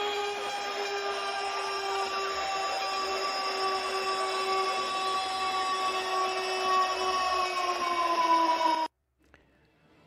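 Goal horn sound effect: one long, steady horn blast over a rushing noise, dipping slightly in pitch near the end before it cuts off abruptly about nine seconds in.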